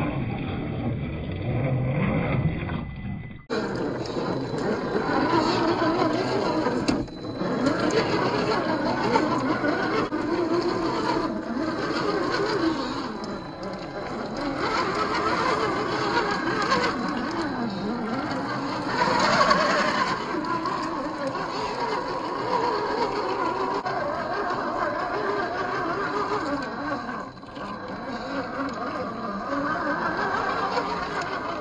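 The brushed 540-size 45-turn electric motor and gear drivetrain of a 1/10-scale RC rock crawler whining under load as it climbs wet mud and rock. Its pitch wavers up and down with the throttle, and the sound turns abruptly brighter about three and a half seconds in.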